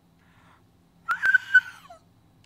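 A woman's high-pitched whimpering wail, held for just under a second and dropping in pitch at the end, after a faint breath: a mock sob muffled behind her hand.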